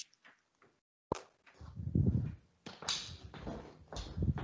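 The call audio drops out for about a second, then a sharp click and faint, irregular rustling and muffled noise come through an open video-call microphone.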